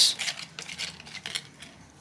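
Utensil stirring a wet clay-and-water mud mix in a plastic tub, with light clicks and scrapes against the tub's sides that fade out after about a second and a half.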